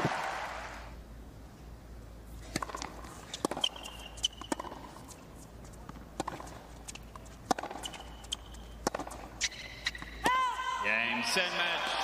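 Tennis rally on a hard court: a string of sharp racket strikes and ball bounces over a quiet crowd. About ten seconds in the crowd breaks into loud cheering as the match-winning point ends.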